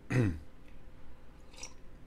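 A man clearing his throat once, a short sound falling in pitch at the very start.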